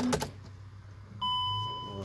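Dashboard warning chime of a 2015 VW Crafter van as the ignition is switched on: a single steady high beep starting about a second in and lasting under a second.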